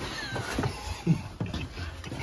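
Footsteps and knocks of people climbing into a parked train carriage through its door, with one short, high squeak that falls in pitch just after the start.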